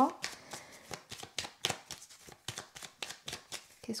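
A deck of tarot cards being shuffled by hand: a quick, irregular run of light card flicks and slaps.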